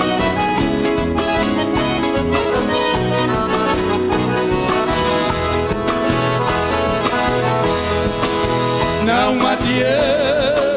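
Live sertanejo band playing an instrumental passage of a traditional 'modão': accordion carrying the melody over acoustic guitar, bass and drums with a steady beat. Near the end a male singer comes in with a wide vibrato.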